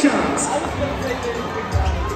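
Live basketball game sound in an arena: voices and crowd chatter, with a couple of sharp court noises near the start and low thuds of a bouncing ball near the end.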